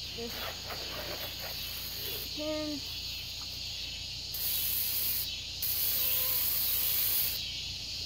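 Garden hose spraying water onto an ATV: a bright hiss that starts about four seconds in, breaks off for a moment, and runs again until shortly before the end.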